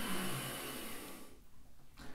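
A soft breath: a faint hiss of air that fades out about halfway through, leaving near quiet.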